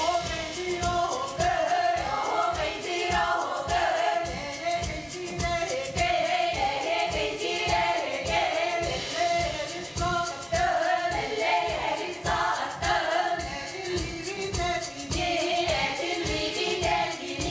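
A female vocal ensemble of about eight singers singing together over a steady low beat.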